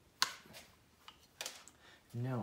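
Two light, sharp clicks about a second apart, from hand tools being handled at a workbench.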